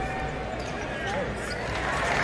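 Steady crowd noise in a basketball arena during live play, with a basketball bouncing on the hardwood court.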